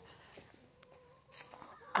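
Chickens clucking faintly.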